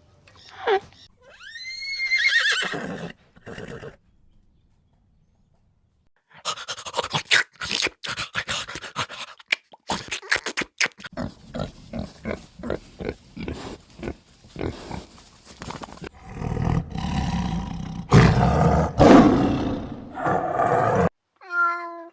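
A run of different animal calls. There is a single gliding call that rises and then falls about two seconds in, then quick rhythmic grunting and louder squealing from pigs, and a short cat meow at the very end.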